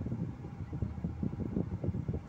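A low, uneven rumble inside a car's cabin as it crawls in slow traffic.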